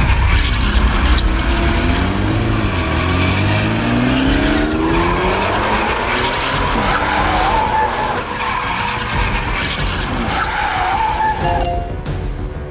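Cars in a chase: engines revving with rising and falling pitch and tyres squealing, over a heavy low rumble at the start.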